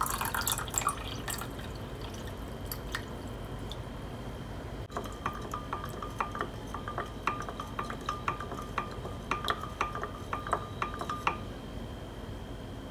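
Water poured briefly into a glass measuring cup of sauce, then a run of small drops falling into the liquid, irregular plinks several a second from about five seconds in until shortly before the end.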